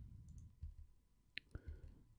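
Near silence with a few faint, sharp clicks of a computer keyboard and mouse, the clearest about one and a half seconds in.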